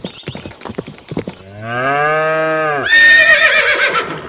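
A cow mooing once, a low call that rises and falls back, after a run of quick clicks and knocks. It is followed by a louder, higher call with a wavering pitch.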